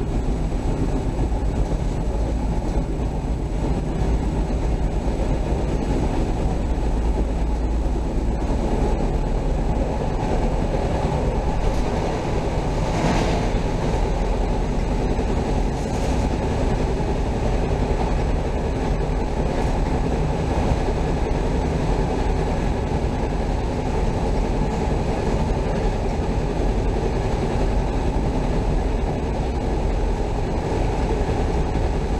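Chicago CTA Orange Line rapid-transit train running at speed on its rails, heard from inside the car as a steady, low rumble.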